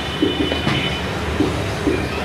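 Marker pen writing on a whiteboard: a run of short, irregular strokes, with a thin high squeak in the first second.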